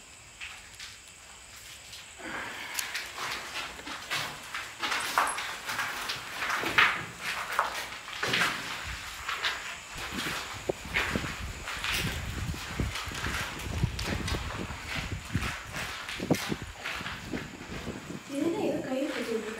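Footsteps and shuffling of people walking, a run of irregular knocks and scuffs that starts about two seconds in, with heavier low thuds in the second half.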